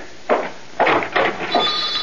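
A radio-drama sound effect of a front-door bell, set ringing by callers: a steady, high ringing starts about three-quarters of a second before the end, after a few short noisy sounds.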